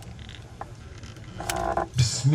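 Low steady hum through the sound system, with one sharp click of the handheld microphone being handled about one and a half seconds in.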